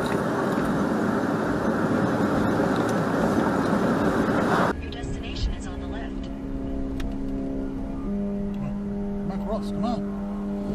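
Dashcam recording of a moving car: steady tyre and road noise. About halfway through it cuts to a quieter car cabin with a steady low hum and a few faint higher tones near the end.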